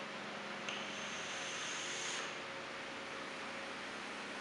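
A vape mod being drawn on: a faint steady hiss of air pulled through the atomiser, with a thin high whistle from under a second in until about two seconds in.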